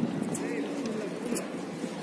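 Indistinct background voices, with a bird's low cooing in the first second.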